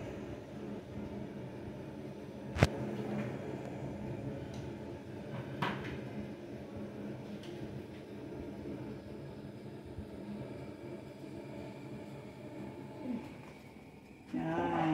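A few sharp clicks of something being handled, the loudest about two and a half seconds in and a weaker one near six seconds, over a steady low hum.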